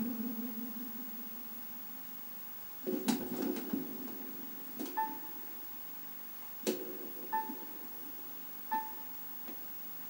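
Karaoke backing music dying away at the end of a song, then a few isolated short notes and brief high tones from the karaoke system, spread over the quiet seconds that follow.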